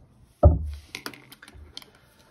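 A dull thump about half a second in, then a quick run of light clicks and taps as a metal-gripped Pentel Orenz AT mechanical pencil is handled and set down among other pens on a cutting mat.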